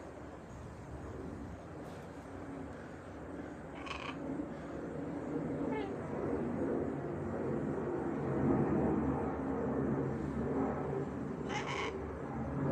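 Pet parrots calling with low-pitched vocal sounds that grow louder over the seconds, with a brief higher squawk about four seconds in and another near the end.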